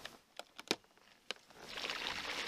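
A few separate sharp clicks as a plug is pushed into the solar generator's inverter. About one and a half seconds in, a hiss of water starts and grows as a half-horsepower pond fountain begins spraying.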